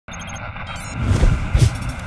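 Electronic logo sting: a quick run of four short high beeps, then two deep bass hits about a second in and half a second later, over a noisy swishing bed.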